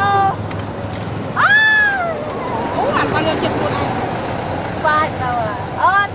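A series of short, high-pitched, meow-like squealing calls, about five in all. The loudest is a longer call about a second and a half in that rises and then falls in pitch.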